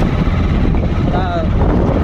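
Wind rumbling on a handheld phone's microphone: a loud, steady low buffeting throughout, with a short bit of voice about a second in.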